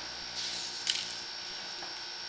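Steady hiss with a faint high-pitched whine from the sewer inspection camera's recording equipment, broken by a short scraping rush and a single click about a second in as the camera is pushed along the pipe.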